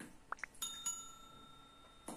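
Subscribe-button notification sound effect: two quick rising chirps, then a small bell struck twice in quick succession and left ringing.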